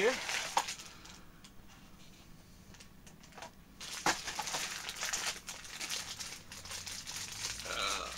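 Crinkling and rustling of a blind-box toy's inner wrapper as it is unwrapped by hand. It starts about halfway through after a quiet stretch and goes on as a close, busy crackle.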